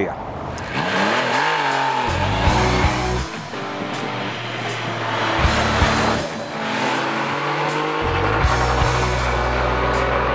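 Triumph Rocket 3 motorcycle's three-cylinder 2,458 cc engine revving as it rides by, with its pitch rising and falling about a second in, mixed with background music.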